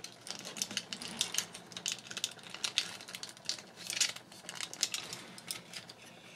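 Irregular light clicks and rattles of plastic parts as hands work the joints and panels of a Takara Tomy Masterpiece MP-47 Hound Transformers figure during transformation.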